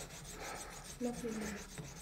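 Steel scraper blade in a two-handled wooden holder drawn over a clamped piece of water buffalo horn: faint, dry scraping made of quick repeated strokes, as the horn is smoothed and thinned.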